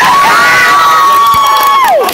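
A spectator's long, high-pitched cheering scream held on one note for almost two seconds, then dropping in pitch as it ends, over general crowd noise.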